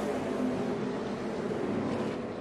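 A pack of NASCAR Xfinity stock cars with V8 engines running past on the track, a steady engine drone with no sharp events.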